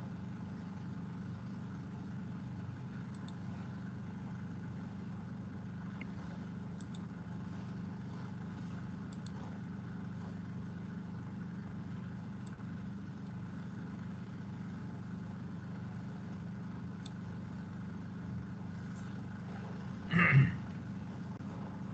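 Steady low machine hum with a few faint clicks.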